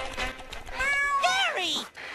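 A cartoon snail meowing like a cat: drawn-out meows that rise and fall in pitch, ending on a long falling one.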